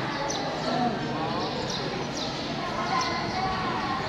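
Background chatter of people's voices, with short high chirps falling in pitch, repeating a few times a second.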